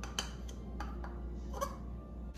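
A few light clicks and knocks of kitchen utensils and containers being handled on a counter, over a steady low hum.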